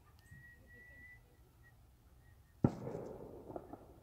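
A thin, high whistle-like tone near the start, then a single sharp crack about two and a half seconds in, followed by a short rustling tail and a few small clicks.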